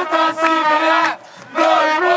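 Football supporters chanting together with trumpets holding notes and bass drums beating. The chant breaks off briefly just past halfway, then comes back in.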